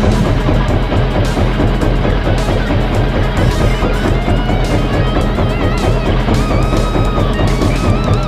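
Background music with guitar, over a steady low drone.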